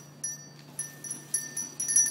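A handbell being shaken by a horse: about five or six uneven strokes, each ringing on briefly, with the loudest near the end.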